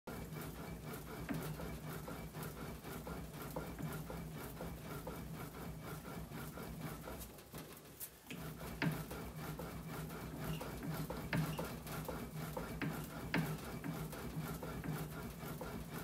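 Hand-operated bat rolling machine pressing a youth baseball bat between its rollers to break it in, giving a steady run of fine clicks and creaks from the rollers and bat. The sound drops off briefly about halfway through, then carries on.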